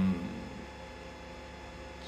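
Faint, steady electrical hum under quiet room tone in a pause between speech.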